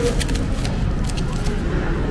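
Plastic takeout food containers being handled and set down on a table: a few light clicks and crinkles, mostly in the first second, over a steady low rumble.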